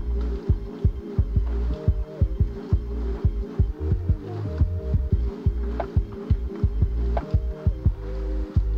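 Background music with a pulsing bass beat under sustained held chords.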